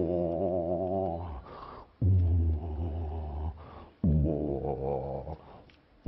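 A man making long, low, wavering vocal tones into a close microphone, three in turn about two seconds apart. Each starts with a short downward swoop and fades out.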